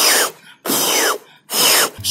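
A beatboxer's airy mouth sounds through rounded, pursed lips, about three bursts, each carrying a thin whistle-like tone that slides down in pitch. These are demonstration attempts at the poh snare technique.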